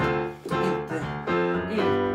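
Keyboard playing sustained chords in a disco-style groove, with a new chord struck about once a second.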